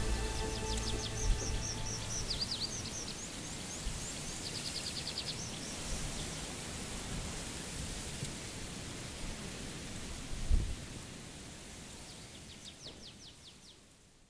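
Music dies away in the first second, leaving a steady hiss with small birds chirping in short, quick high trills several times. A low thud comes a little past halfway, and the sound fades out at the end.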